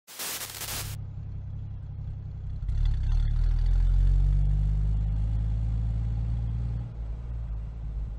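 A jeep engine running with a low, steady rumble that grows louder about three seconds in, holds, and eases off near the end. A short burst of noise comes first, at the very start.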